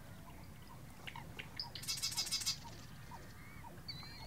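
Marsh wren singing: a few short introductory notes, then a loud, fast rattling buzz lasting about half a second around the middle.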